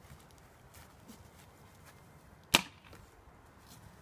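A single sharp snap, like a hit or shot, about two and a half seconds in, over a faint steady background.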